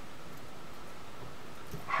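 Steady faint hiss of room tone with no distinct event, until a woman's voice starts speaking near the end.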